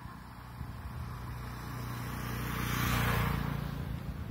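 A motor vehicle driving past, its engine and road noise growing louder to a peak about three seconds in and then fading.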